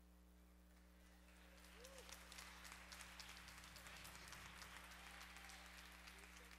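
Congregation applauding faintly, the clapping building up from about a second in and then holding steady. A steady low electrical hum runs underneath.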